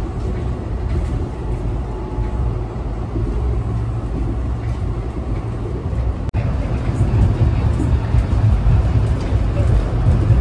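Steady low rumble of a moving Amtrak passenger train, heard from inside the car. About six seconds in there is a brief click and dropout, after which the rumble is somewhat louder.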